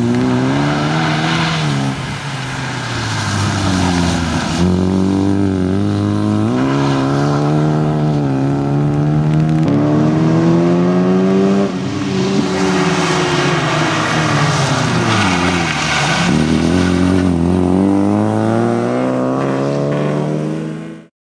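Opel Corsa B race car's engine driven hard on a wet track, its revs climbing and falling over and over as it accelerates, lifts for corners and changes gear, with several sharp drops in pitch.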